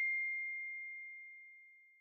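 A single high chime from a logo sting: one clear, pure tone ringing out and fading away smoothly, dying out just before the end.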